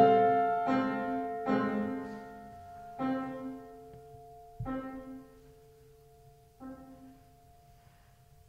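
Grand piano playing alone: a slow succession of about five chords, each struck and left to ring and die away, with the gaps between them widening and the playing growing quieter toward the end.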